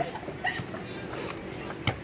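Open-air background with a few short clicks and one sharp knock near the end.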